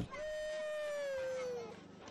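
One long, high wail from a young child, held for about a second and a half and sliding slightly down in pitch.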